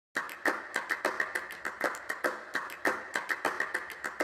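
A rapid, uneven series of sharp clicks, several a second.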